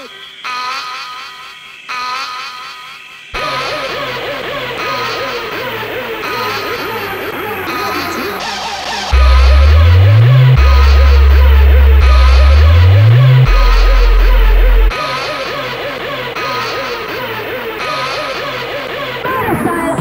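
Sample-based rough 8-bit jungle/hardcore track playing back from the OctaMED tracker on an Amiga 1200: four channels of samples straight out of the Amiga's Paula chip, with no synthesis. A sparse opening thickens into a dense, busy mix about three seconds in. A heavy sub-bass with upward pitch slides comes in about nine seconds in as the loudest part, then drops out around fifteen seconds.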